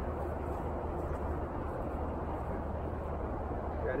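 Steady outdoor background noise with a low, even hum underneath; no club strike or other sharp sound.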